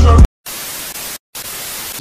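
Music cuts off abruptly, then a steady hiss of static noise plays in two stretches separated by a brief silence.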